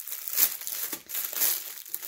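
Clear plastic packaging bag crinkling in irregular crackly rustles as it is handled and opened by hand.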